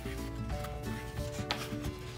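Paper pages of a picture book rustling and sliding as a page is turned by hand, with a sharp click about a second and a half in, over soft background music of held notes.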